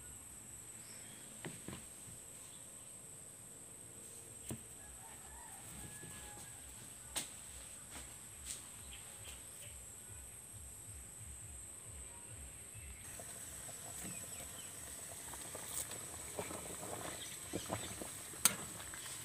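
Faint clucking of chickens in the background, with a few light knocks scattered through.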